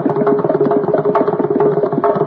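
Mridangam playing a fast, dense run of strokes over a steady drone.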